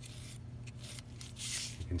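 Felt-tip marker drawn across corrugated cardboard, marking a cut line: a few faint short strokes, the longest about one and a half seconds in.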